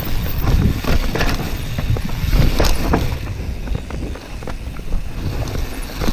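2018 YT Tues downhill mountain bike riding fast over a rock slab, heard through a helmet GoPro: wind on the microphone and the rumble of tyres on rock, with frequent sharp clicks and rattles from the bike over the bumps.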